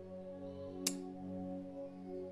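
Soft background music: one sustained chord held steadily, like an ambient keyboard pad, with a single sharp click just under a second in.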